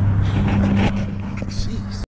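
Steady low-pitched hum under faint voices.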